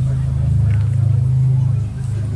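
A loud, steady low drone runs under faint, indistinct voices.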